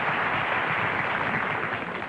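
Studio audience applauding steadily, dying down near the end.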